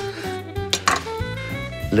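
Soft background music, with a few sharp knife chops on a wooden cutting board as raw mackerel loins are cut into pieces.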